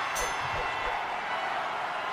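Steady crowd cheering from a video game's boxing arena after a knockout.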